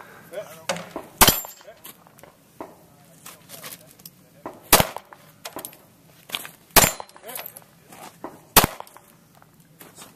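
Four single handgun shots, each a sharp, loud crack. The first comes about a second in; the other three follow near the middle and later, about two seconds apart.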